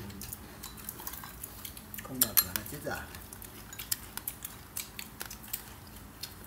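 Chopsticks and tableware clinking irregularly against plates, bowls and foam takeout boxes during a meal, a scatter of small clicks with the loudest about two seconds in.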